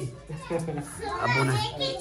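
People talking in a room, children's voices among them.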